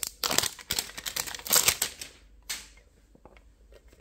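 A small Pokémon card mini tin and its wrapping being handled to open it: a quick run of crackles and clicks for about two seconds, one more burst a little later, then a few faint ticks.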